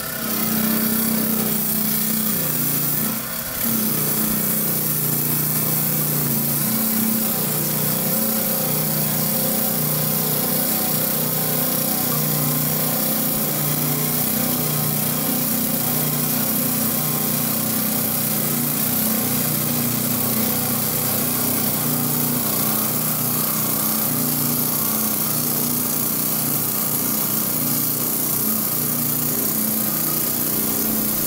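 Lortone TS-10 10-inch trim saw's water-cooled green crimped diamond blade cutting through soft lepidolite, a steady motor hum under a hissing cutting sound. The sound dips briefly about three seconds in, then holds steady.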